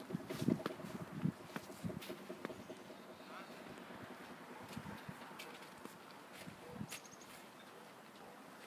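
Faint steady hum of a solar-and-battery-powered rooftop carrier's electric drive as it lifts a rack of step ladders. There are a few footsteps on a snowy driveway in the first couple of seconds.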